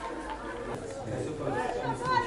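Several voices calling and chattering at once around a football pitch during play, growing louder about halfway through.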